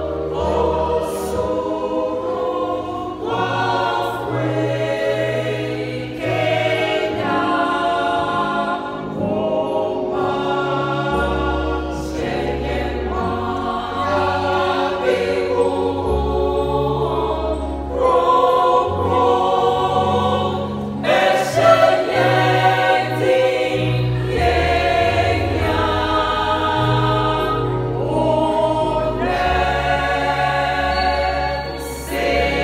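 Church choir of mixed voices singing a gospel song in parts, continuous and full, over held low bass notes that change every second or two.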